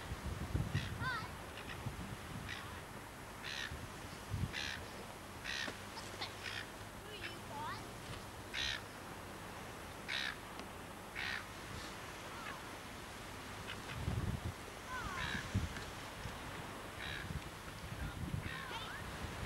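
Birds calling outdoors: short harsh calls repeat about once a second, with small chirps in between. Low rumbles on the microphone come about a second in and again near the end.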